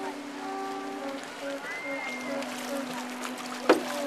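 A Hawaiian prayer chant carried from shore: a voice holds long notes over a steady low drone. Near the end comes one sharp, loud knock, a canoe paddle stroke.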